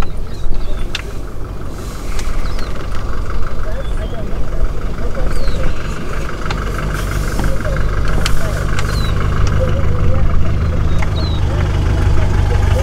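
Vehicle engine idling steadily, its low hum growing a little stronger in the second half, with short high bird chirps over it.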